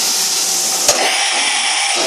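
Steady, loud rushing hiss of running machinery around a machining center, with one sharp click a little under a second in.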